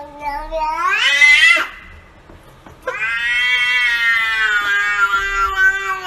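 A cat meowing in two long, drawn-out calls. The first rises in pitch and breaks off about a second and a half in. The second starts about three seconds in and is held at a fairly steady pitch for over three seconds.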